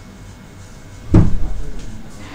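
A single loud, deep thump about a second in, fading away over most of a second.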